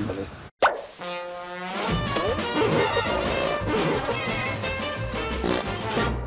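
A sudden pop about half a second in, then a short music jingle: a TV show's transition sting.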